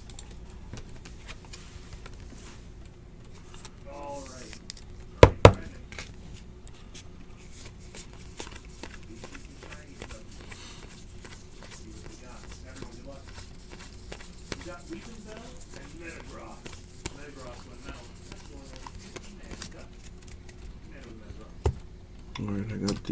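Football trading cards being handled and thumbed through by hand: soft clicks and rustles of card stock sliding over card. Two sharp knocks come about five seconds in and are the loudest sounds.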